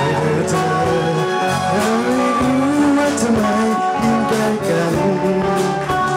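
Pop band music: a voice singing a sliding melody over electric guitar, bass guitar and a steady drum beat.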